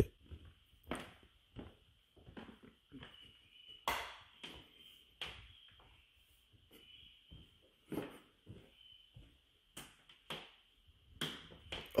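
Soft, irregular knocks and rustles of hands and a handheld camera being moved about, over a faint steady high tone.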